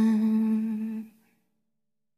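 A woman's singing voice holds the last word of the song, "one", on a single steady note, with no instruments heard. The note fades out a little over a second in.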